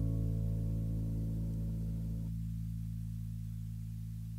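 The final chord of an acoustic guitar ringing out and slowly fading at the end of a song. About two seconds in, the higher notes stop suddenly, leaving the low notes sustaining.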